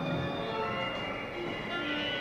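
Orchestra playing sparse, overlapping held notes at many unrelated pitches, high and low, each entering and dying away on its own, as in aleatoric chance music.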